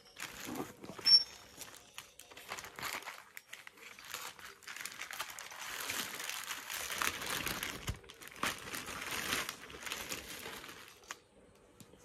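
Plastic courier mailer bag crinkling and rustling as it is handled and cut open with scissors, densest in the middle, with one sharp click about a second in.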